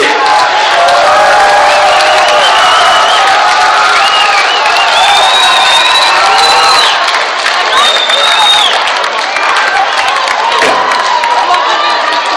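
Large concert crowd cheering and yelling, many voices at once, with several long high-pitched yells rising above it through the middle.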